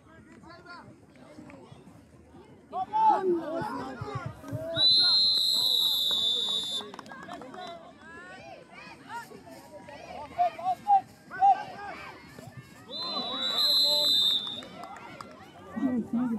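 A referee's whistle blown in two long, steady blasts, about five seconds in and again near the end. Shouting players and spectators are heard throughout, with a few short loud calls shortly before the second blast.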